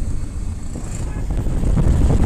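Low rumble of a moving bus heard from inside the cabin, growing louder near the end as wind buffets the microphone.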